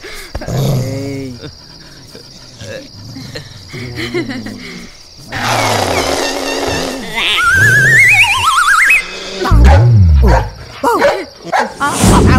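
Film soundtrack: a dog growling and barking, mixed with background music. Two rising, warbling tones come in about seven and a half seconds in.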